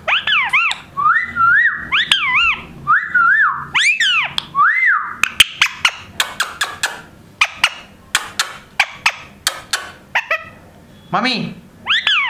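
Indian ringneck parrot whistling: a string of rising-and-falling whistled notes for the first five seconds, then a rapid run of short, sharp chirps and clicks. Near the end comes a short talking-parrot "mummy".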